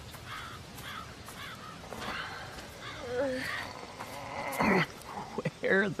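Birds calling in outdoor woodland ambience: short chirping calls through the first half and a louder call about three-quarters of the way in.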